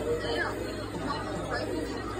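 Quiet, indistinct voices talking over a steady low hum.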